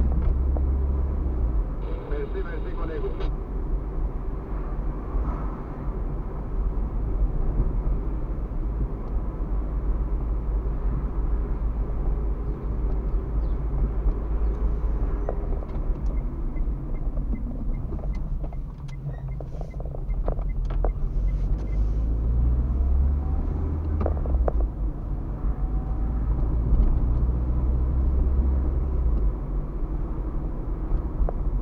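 Car interior driving noise: steady engine and tyre rumble heard from inside the cabin, with a run of light ticks about two-thirds of the way in.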